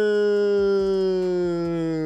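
A man's voice holding one long sung note that sinks slowly in pitch, drawing out the end of a word.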